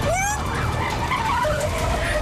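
A car's engine running hard with a low rumble while its tyres squeal as it is swerved sharply; a long, steady squeal is held near the end.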